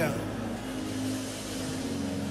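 Soft background music: steady, sustained low chords held between spoken phrases.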